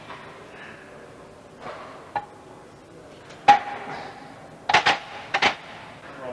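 Metal dumbbells clanking: a few sharp clinks, each with a brief ring. The loudest comes about three and a half seconds in, followed by two pairs of quick clanks near the end.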